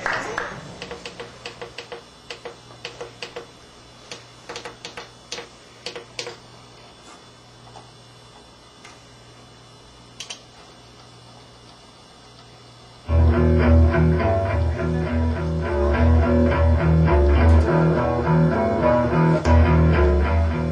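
A faint steady hum with scattered clicks and taps, then about thirteen seconds in a band cuts in abruptly, jamming loudly on bass and electric guitar. It is an informal jam, taped as a microphone test at the start of the recording sessions.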